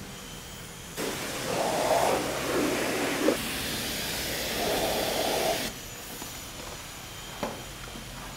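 Self-serve car wash high-pressure wand spraying water onto a plastic child car seat: a steady hiss that starts about a second in, shifts in tone as the spray moves over the seat, and cuts off suddenly after about four and a half seconds.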